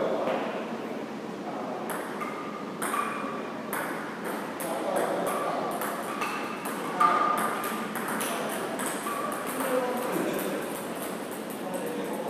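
Table tennis balls being hit with a paddle and bouncing on the table and hard floor: a run of sharp clicks and light pings every half second to a second, the loudest about seven seconds in.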